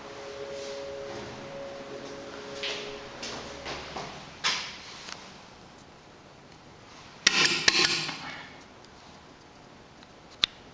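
Footsteps and light clicks beside an old elevator's lit hall call button, over a faint steady hum. About seven seconds in comes a loud burst of metallic clanking and rattling that lasts about a second.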